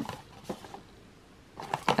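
Handling of a small cardboard box as it is opened and looked into: a few soft clicks and light rustles, with a quiet stretch in the middle.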